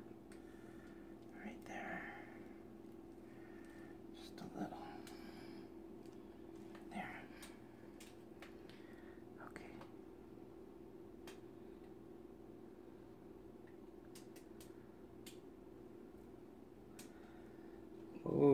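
Near silence: room tone with a steady low hum, a few faint clicks and brief soft whispered or murmured voice sounds.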